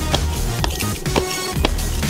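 Background music, with light thumps about twice a second from shoes landing on asphalt as a person hops through a hopscotch court.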